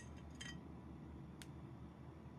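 Three faint, short clicks from a decoupaged glass plate being handled and turned in the hands, over a low steady hum.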